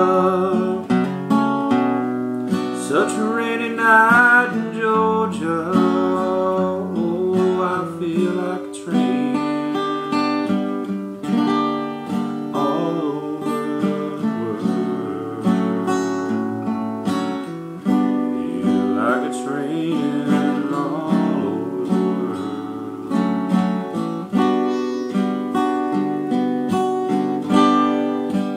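Acoustic guitar playing chords, strummed and plucked, in an instrumental passage between sung lines.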